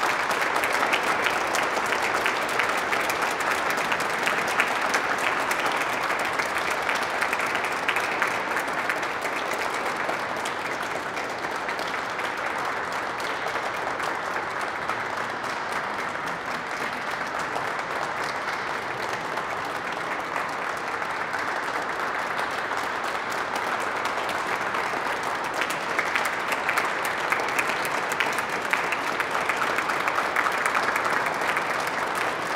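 Audience applauding steadily in a large reverberant cathedral, thinning slightly midway and swelling again near the end.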